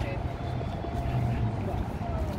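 Steady low rumble of outdoor city ambience, with faint voices of people mixed in.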